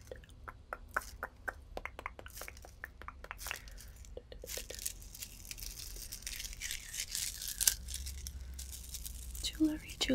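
Beaded stretch bracelets with small metal disc charms handled close to the microphone: beads and charms click against each other in quick light taps for the first few seconds, then give a denser crackling rustle as they are squeezed and rubbed between the fingers.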